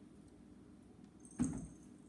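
Quiet room tone with a single short, dull thump about one and a half seconds in.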